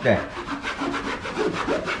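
A wall being scrubbed by a gloved hand with a cleaning pad, in a quick, even back-and-forth rubbing.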